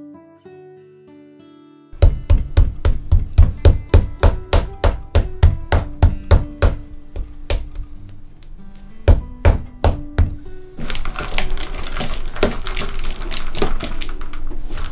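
Soft acoustic guitar, then a knife chopping hard on a wooden cutting board: loud, sharp strikes about three to four a second for several seconds, giving way to a denser crackling near the end.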